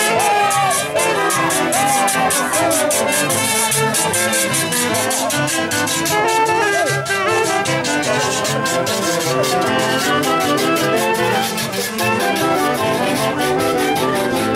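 A live brass band with saxophones playing a lively dance tune over a steady percussion beat.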